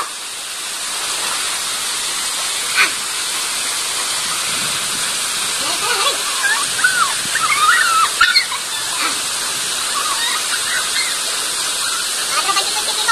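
Waterfall: a steady, even rush of falling water.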